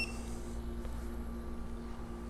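A single short electronic beep from the PCE-RT2300 roughness tester as its START key is pressed, then a faint steady low hum while the test runs.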